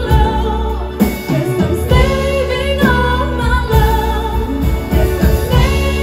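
A woman singing a slow R&B ballad, holding long notes with vibrato in phrases that break every second or two, over instrumental accompaniment with a steady bass.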